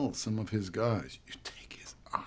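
A man speaking quietly in English film dialogue, pausing about a second in.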